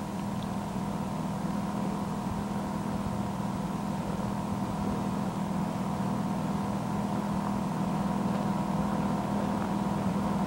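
Steady low hum with hiss: the background noise of an old tape recording of a talk. It is unbroken and rises slightly in level.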